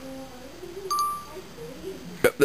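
A single short electronic chime about a second in: one clear tone with bright overtones that starts sharply and fades within half a second. It is the iPod Touch Voice Memos tone as the test recording is stopped.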